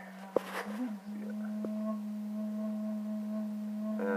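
A steady low hum with a second, higher steady tone joining about a second in. A sharp click and a brief rustle come near the start.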